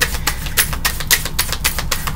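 A fast, even run of sharp clicks, about six a second.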